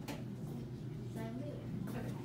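Quiet, brief speech about a second in, over a steady low hum, with a few faint ticks.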